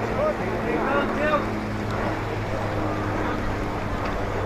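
Distant voices of footballers and spectators calling out across the ground, over a steady low hum and some wind on the microphone.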